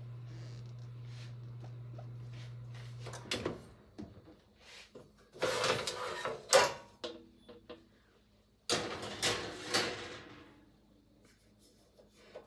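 A metal mesh crisper basket holding dried injera being handled and shifted on the stove, giving two scraping, rattling stretches of about a second and a half each, the second coming about two seconds after the first. A steady low hum runs through the first three seconds and then stops abruptly.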